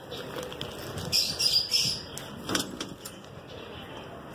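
A diamond dove flapping its wings against the mesh of a net bag, in a few short bursts, the longest about a second in.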